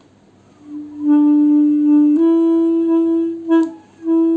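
Alto saxophone playing two long held notes, the second a step higher than the first. The notes start about three quarters of a second in and stop just before the end.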